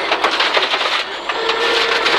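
Inside a Peugeot 306 rear-wheel-drive rally car on a loose, muddy forest stage: gravel and mud rattle and crackle against the underbody and wheel arches over the road and engine noise.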